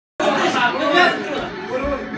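Several voices talking over each other, cutting in abruptly just after the start.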